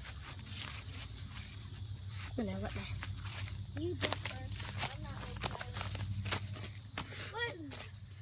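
Footsteps pushing through leaf litter and undergrowth, with many short irregular crackles of twigs and leaves, over a low steady rumble.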